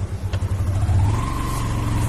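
Small motor scooter's engine running on a dirt track, its pulsing low beat smoothing out as it revs up about halfway through, with a rising whine that then holds steady.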